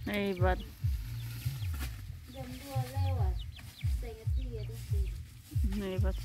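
Domestic chickens clucking in short, repeated calls, with a person's wordless mumbling among them.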